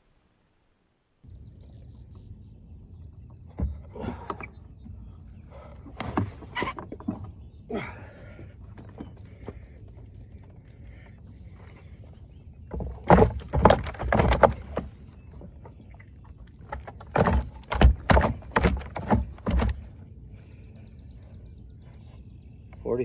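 A muskie thrashing and being handled on a wooden measuring board on a boat deck, making clusters of knocks and slaps. The loudest clusters come about halfway through and again a few seconds later, over a steady low background.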